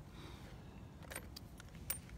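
A few faint, sharp light clicks, the loudest near the end, over low steady outdoor background noise.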